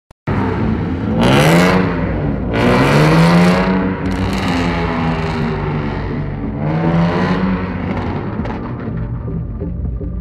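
Autoslalom cars, a BMW E30 and a Toyota Corolla AE86, accelerating hard on a wet course, their engines revving up in three strong rising runs about one, three and seven seconds in, the pitch dropping between them. The engine sound thins out near the end.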